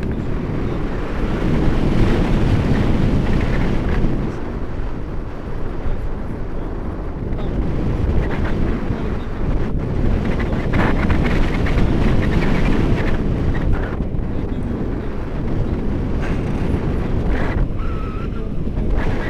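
Wind rushing over the camera's microphone in flight on a tandem paraglider: a loud, low, rough rumble that swells and eases in gusts.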